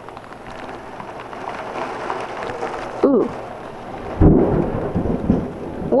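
Heavy rain falling steadily, then about four seconds in a very close thunderclap: a sudden sharp crack like a gunshot, rumbling on for about a second.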